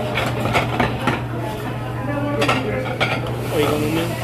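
Tableware clinking: several short, sharp clinks and knocks over a steady low hum, with a voice briefly near the end.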